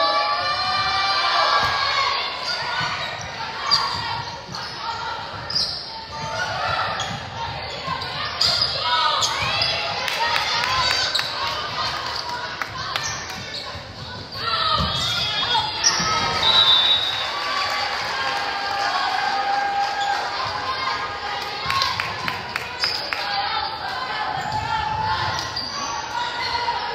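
Indoor volleyball play on a hardwood gym floor: a ball bounced on the floor and struck in a rally, with repeated sharp impacts. Players and spectators call and shout over them, echoing in the large hall.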